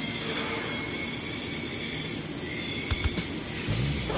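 Steady hissing machine noise of welding work on a large steel tank, with a few short knocks about three seconds in.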